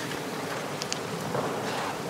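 A steady, even hiss of room background noise, with no voice and no distinct event standing out.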